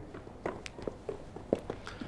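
Footsteps on a hard surface: a series of short, uneven taps.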